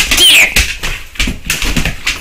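Two dogs playing on a tile floor, their claws clicking and scrabbling rapidly on the tiles. A short high-pitched squeal comes about a quarter second in.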